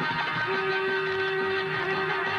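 Live Middle Eastern folk dance music for dabke: a single long held note starts about half a second in over a steady beat.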